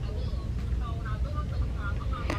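Store ambience: faint, distant voices over a steady low rumble.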